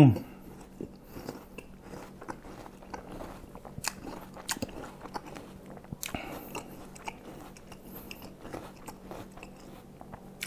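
A person chewing crisp raw jicama (bengkoang) with his mouth close to a clip-on microphone: irregular wet crunching and small crackles throughout.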